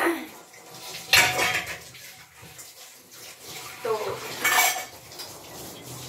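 Dishes and utensils being washed by hand at a kitchen sink, clattering and clinking against each other, with two loud clanks about a second in and near the middle of the second half.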